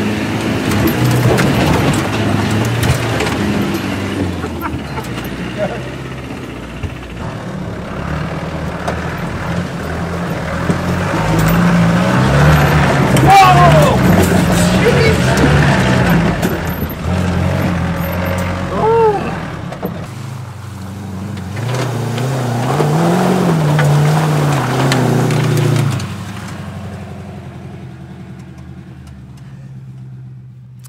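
Land Rover engine heard from inside the cab, revving up and down as it climbs a steep, muddy off-road bank. It drops away near the end.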